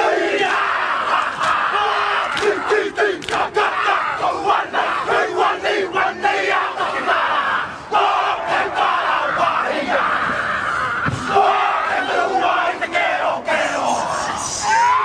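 A team of men chanting and shouting a Māori haka in unison, broken by frequent sharp slaps and stamps.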